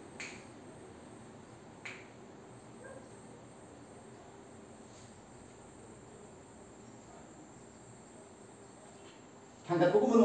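Quiet room with faint, steady insect chirring like crickets, two soft clicks in the first two seconds, and a voice starting just before the end.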